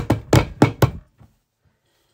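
A quick, even run of short knocks or taps, about six a second, that stops abruptly about a second in.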